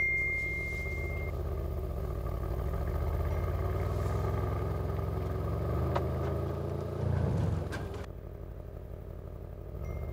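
Mercedes-AMG C63 S V8 with an Akrapovic exhaust, heard from inside the cabin, pulling away at low city speed. The engine note rises gently to a brief swell about seven seconds in, then drops off sharply about a second later. A high message-notification chime rings out at the start and fades within about a second.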